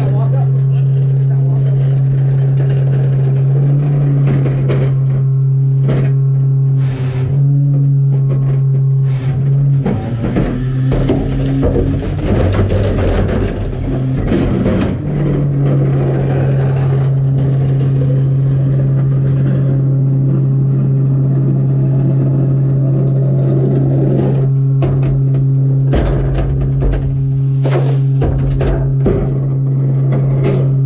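Garbage truck engine running steadily, a constant low hum at the open rear hopper of a rear-loader. From about ten to fifteen seconds in, trash and bags clatter into the hopper, and near the end there is a run of sharp knocks and bangs as carts are handled at the back of the truck.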